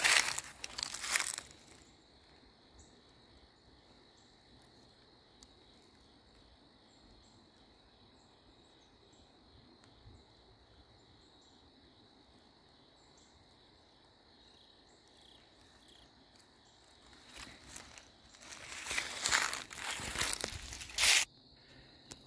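Footsteps crunching through dry fallen leaves and grass, at the start and again for a few seconds near the end. In between is a quiet stretch with a steady high insect drone.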